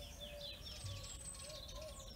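Faint birdsong: a quick run of short falling chirps in the first second, then a thin high whistle.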